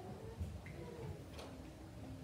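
Quiet room tone with two faint ticks about a second apart.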